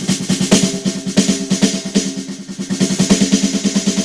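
Fast snare drum roll and stick strokes on a converted acoustic snare, heard as the drum module's electronic snare sound fired by a Trigera internal trigger. The strokes come through with little dynamic range.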